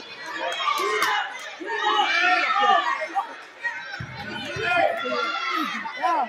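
Spectators' voices in a gym: overlapping talk and calls from the crowd, with a brief low thud about two-thirds of the way in.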